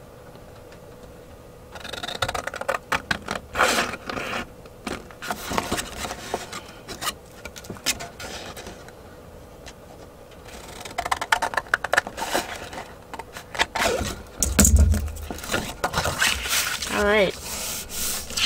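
Scissors cutting through paper in runs of short snips, with the paper rustling and scraping as it is turned between cuts. There is one low thump near the end.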